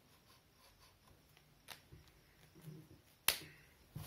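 Faint handling sounds of a whiteboard marker and cloth: a few small clicks and taps, with one sharp snap about three seconds in.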